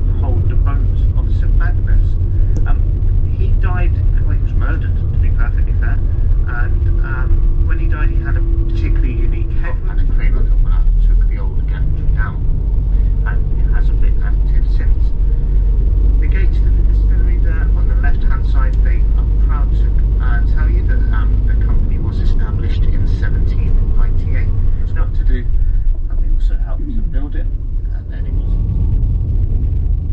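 Steady engine and road rumble heard inside a moving vehicle, with indistinct voices chattering over it.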